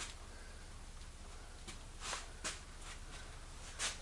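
Faint handling noise from a handheld camera gimbal being turned around: four soft clicks or taps over a low steady hum.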